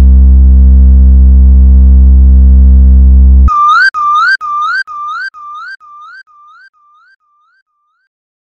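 Ending of a DJ remix: a loud held bass drone cuts off abruptly, then a rising whistle-like synth chirp repeats about twice a second, fading away like an echo over the next few seconds.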